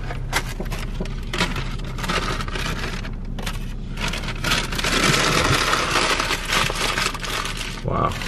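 Paper takeout bag rustling and crinkling, with plastic food containers and wrappers clattering, as fast food is unpacked into a plastic bowl; a longer burst of rustling comes about five seconds in. A car engine runs steadily underneath as a low hum.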